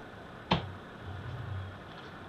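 A single sharp metallic click about half a second in as the detached pump-shotgun barrel is handled and set down, followed by a faint low hum.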